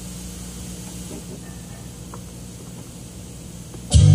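A low steady hum with a few faint clicks, then an organ accompaniment comes in loudly right at the end.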